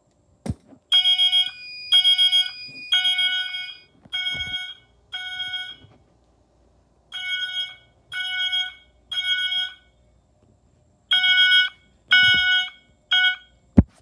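Fire alarm horns sounding in a code-3 (temporal-three) pattern: three short blasts, a pause, then three more, set off by testing a smoke detector. A steadier, higher tone runs under the first few blasts, and the last blast is cut short near the end.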